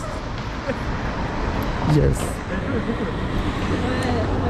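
Steady city road traffic, motor vehicles driving past on the road alongside, with a continuous low rumble.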